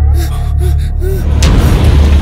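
Film background music with a deep, steady low drone, over which come short gasping breaths. A noisy swell builds in over the last half second.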